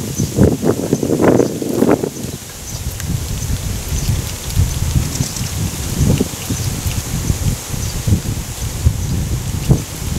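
Wind buffeting the microphone in a low, uneven rumble, with leaves rustling. A few brief louder sounds come in the first two seconds.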